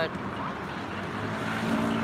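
Road traffic: a motor vehicle passing on the street, its engine hum growing louder in the second half, over steady city background noise.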